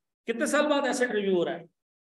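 A man's voice saying a short phrase in Urdu-Hindi, then dead silence for the last moments.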